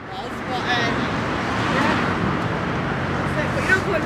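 A road vehicle passing by, its noise swelling and then fading.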